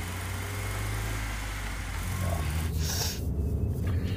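Small car driving slowly: a steady low engine hum with tyre and road noise. There is a short hiss about three seconds in.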